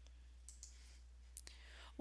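Near silence over a faint low hum, broken by two pairs of faint, short clicks about a second apart, typical of a computer mouse button being pressed and released.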